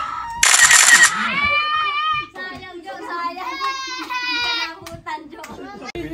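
A family's excited shouting: a loud group yell about half a second in, followed by long, high-pitched squeals from a child.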